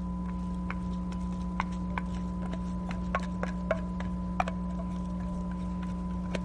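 Light, irregular clicks and taps of a kitchen utensil against a dish as canned tuna is handled, over a steady electrical hum.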